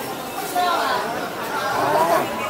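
Chatter of passers-by: several people talking around the camera, with a nearer voice standing out about half a second in and again near the end.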